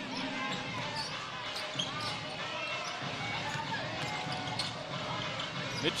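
Basketball game sound from the court: a ball bouncing on the hardwood floor with scattered short knocks, under faint voices echoing in a large, mostly empty hall.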